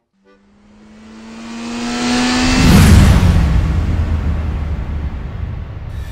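A race car engine approaching and passing: a rising engine note that swells to a loud peak about three seconds in, then a low rumble that slowly fades.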